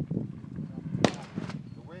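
Sharp gunshot reports at a shooting range: a small crack at the start, then a louder single bang with a brief echo about a second in, over people talking.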